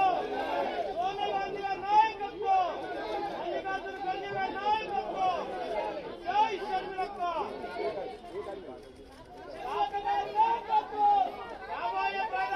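Chatter of several people talking over one another, easing briefly about three-quarters of the way through.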